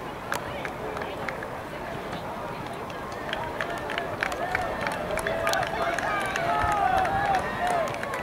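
Spectators yelling encouragement to runners over a steady murmur of outdoor crowd noise, with scattered short sharp clicks. The shouts build and grow louder over the second half.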